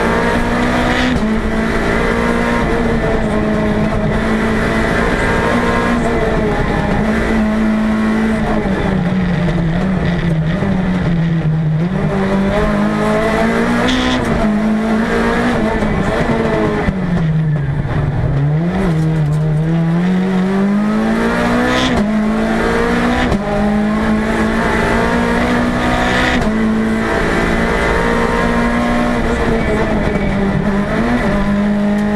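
Peugeot 206 Group A rally car's four-cylinder engine running hard, heard from inside the cabin. It stays high with small quick steps in pitch, drops twice as the car slows (the second time deeper, a few seconds past halfway) and rises again under acceleration.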